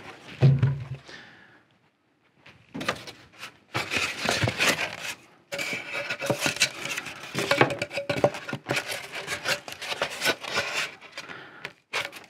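Rigid foam strips scraping and rubbing against a wooden window buck frame as they are worked into it, with a thump about half a second in as the frame is set down. The foam catches and will not slide into the assembled frame.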